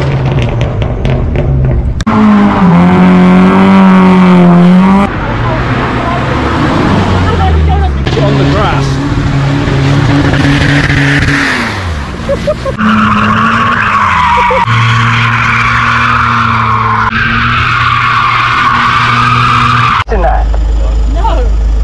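Car engines revving hard and held high, one dropping away in pitch, in a run of short clips that change abruptly every few seconds. Through the second half a long tyre squeal runs over the engine as a car skids.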